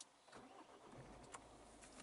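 Ford Mondeo's engine started with the keyless Power button, heard faintly from inside the cabin: a brief crank about half a second in, then a steady low idle hum from about a second in.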